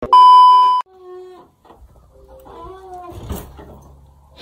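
A TV test-tone beep: one loud, steady high tone lasting under a second, heard with a colour-bar screen effect. Faint indistinct sounds follow it.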